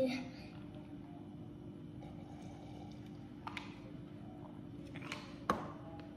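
Quiet room with a steady low hum, a few soft clicks, and one sharp knock about five and a half seconds in as a plastic cup is set down on a wooden table.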